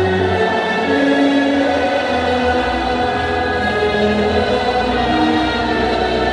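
Choral music: voices singing long held notes that change pitch every second or so, over a steady low bass drone.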